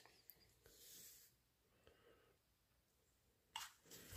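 Near silence: room tone, with a faint rustle about a second in and a brief faint sound near the end.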